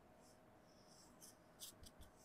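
Near silence with a few faint, short scratchy rustles, the loudest about one and a half seconds in: fingertips rubbing cream into the skin.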